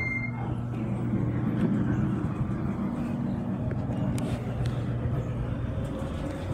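Schindler elevator car travelling, its drive giving a steady low hum, with a high electronic beep cutting off right at the start.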